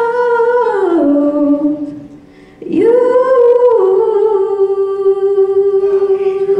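A female singer's solo voice holding long notes: a held note that slides down and fades about two seconds in, then after a breath a new note that swoops up and settles into a long steady tone.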